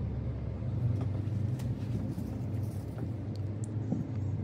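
Steady low background rumble, with a few faint light clicks.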